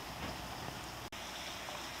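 Steady hiss of water outdoors, even in level, with a momentary break about halfway through.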